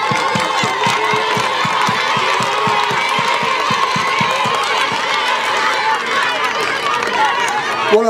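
Large crowd of supporters chanting and cheering together, with a long wavering high note held over the voices and a rhythmic beat of about three or four thumps a second that dies away halfway through.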